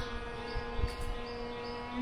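A steady drone held on one pitch, the shruti drone that accompanies Carnatic singing, sounding on after the voice has stopped. Faint, short high chirps repeat about twice a second above it.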